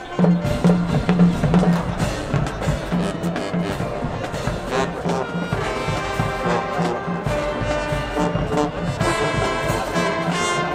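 High school marching band playing loudly, a full brass section with drums, the whole band coming in together at the start after a brief lull.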